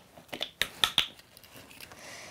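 Plastic screw cap being twisted off a large plastic bottle of cooking oil: a quick run of sharp clicks and crackles between about half a second and a second in, then a few faint ticks.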